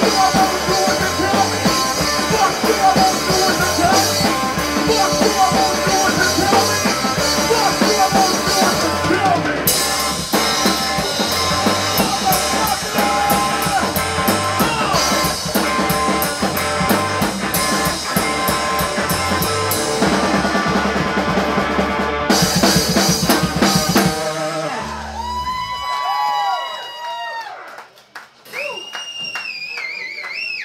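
Live rock band jamming, with electric guitar over a drum kit. The song ends about three-quarters of the way through, and a few whoops follow.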